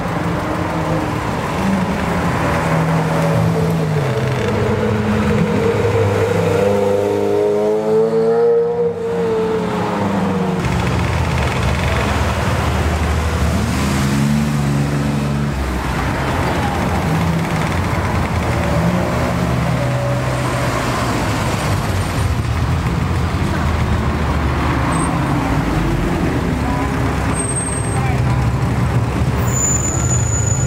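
Ferrari and Lamborghini supercar engines revving as the cars drive slowly past one after another, the engine note rising and falling with throttle blips, with people talking in the background.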